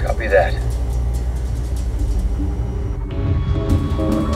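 Low, steady soundtrack drone with a short voice-like burst just after the start; about three seconds in, new sustained tones enter as tense dramatic music builds.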